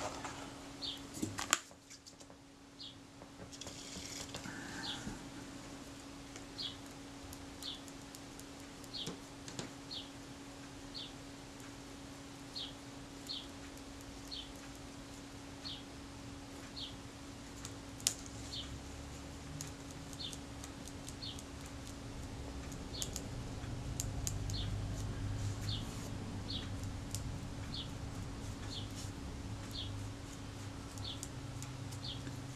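Soft scrubbing of a cotton swab working softened adhesive off small leatherette pieces on a sheet of paper, growing in the second half, over a steady electrical hum. Throughout, a bird gives short high chirps about once a second.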